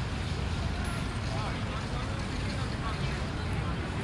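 Outdoor ambience: a steady low rumble with faint, indistinct voices in the distance.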